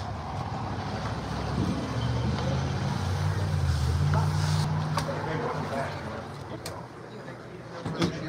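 A vehicle engine running nearby, its low hum swelling in the middle and fading away, under a wash of background noise and indistinct voices.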